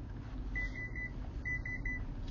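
High-pitched electronic beeping, one steady beep about half a second in and a choppier run of beeps near the end, over a low background hum.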